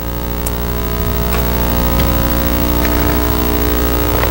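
Loud, steady electrical mains hum: a low buzz with many evenly spaced overtones, growing slightly louder.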